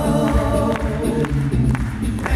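Men's a cappella group singing in close harmony through the concert sound system, a deep bass voice underneath and sharp vocal-percussion hits keeping the beat.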